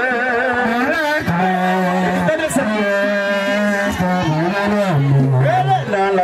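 A man singing a Vodou song into a microphone over a PA, in long held, wavering notes, stepping down to a lower held note near the end.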